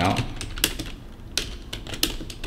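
Computer keyboard keys being typed: a handful of separate, sharp keystroke clicks at an uneven pace.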